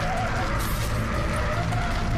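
A car skidding through a spin, its tyres squealing with a wavering pitch, over background music.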